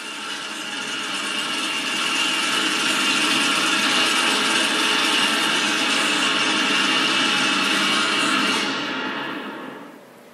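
A sustained, noisy drone with many held pitches from the TV episode's closing soundtrack, played through the computer speakers. It swells over the first few seconds, holds steady, then fades away near the end.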